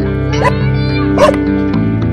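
A dog barking three short times, sharpest just past a second in, over steady background music.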